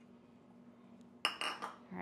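Quiet for about a second, then a metal spoon clinks and scrapes against a bowl of sugar-and-butter cake topping in one short ringing clatter.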